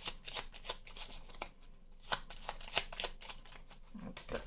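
A deck of oracle cards being shuffled by hand: a quick, uneven run of light card flicks and slaps, with a brief lull in the middle.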